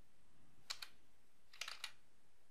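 Computer keyboard keys being tapped, faint: two quick clicks about 0.7 s in, then three more about 1.6 s in.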